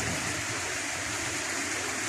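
Water flowing steadily through concrete fish-farm raceways and spilling over the tank walls.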